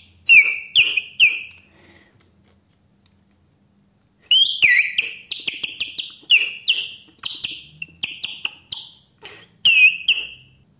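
A salafanka, a strip of plastic bag stretched taut between the hands and blown at the lips, squealing short bird-like chirps, each a sharp high squeak that drops in pitch. Three chirps come first, then a pause of about two seconds, then a quick run of about fifteen chirps.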